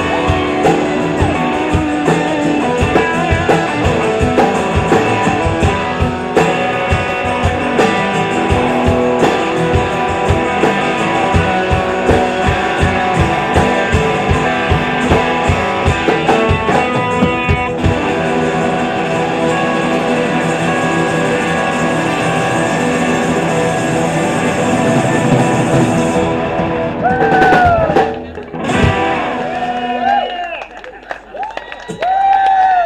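Live rock band playing an instrumental passage: guitars over a drum kit. The steady drum beat falls away about two-thirds of the way through, and the song winds down near the end.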